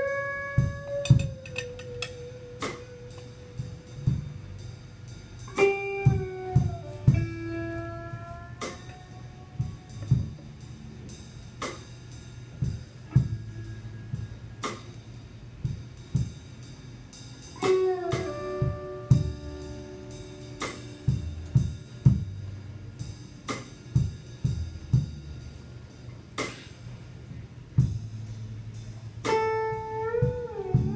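Live electric blues band playing an instrumental section: sustained lead-guitar phrases with bent notes come in near the start, around six seconds, around eighteen seconds and near the end, over a steady drum-kit beat and electric bass.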